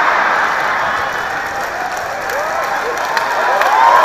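Large theatre audience applauding and laughing, with cheering voices rising through the clapping in the second half.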